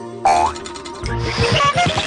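Cartoon sound effects over music: a springy boing with a short rising pitch, then a rapid low pulsing of about ten beats a second as the Thingamajigger vehicle starts up.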